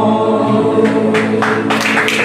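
A group of voices singing together over music, holding long notes. Clapping starts about a second in and grows thicker toward the end.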